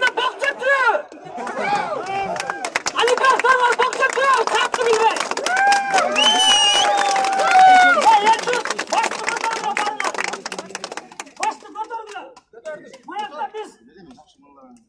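A man's voice amplified through a handheld megaphone, addressing a crowd in loud stretches of speech, with one long drawn-out word about six seconds in. Near the end it gives way to quieter scattered voices.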